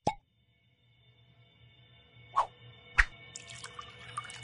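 Cartoon sound effects over quiet music that slowly gets louder: a sharp click at the very start, then two loud gulps of water about two and a half and three seconds in.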